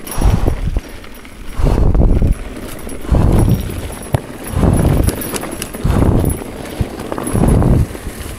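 Mountain bike ridden along a dirt singletrack: rattling and small clicks from the bike, with low rushing puffs coming regularly about every second and a half.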